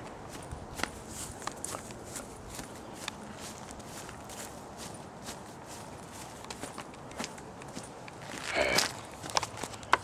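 Scattered light taps and clicks at irregular spacing, with a brief louder rustle near the end.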